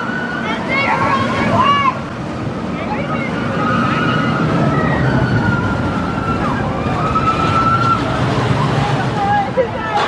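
Vekoma Boomerang roller coaster train running through its inversions on the steel track: a steady rumble that grows louder from about four seconds in. Long high-pitched tones, some level and some gliding, sound over it.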